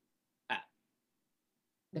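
Dead silence on a video-call line, broken once about half a second in by a single brief vocal sound from a person.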